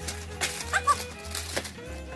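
Background music with a steady bass beat; about a second in, a small dog gives a short, high yip.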